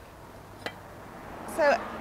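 A single short, sharp click, like a small hard object knocking against metal, about two-thirds of a second in, over a faint steady hiss.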